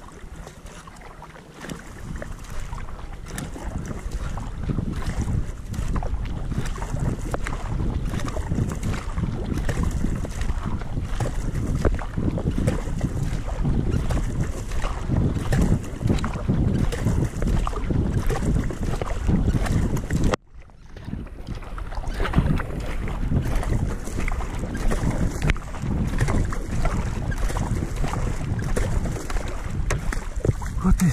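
Wind buffeting the camera microphone over the splash and drip of kayak paddle strokes on calm water. The sound drops out suddenly for a moment about two-thirds of the way through, then picks up again.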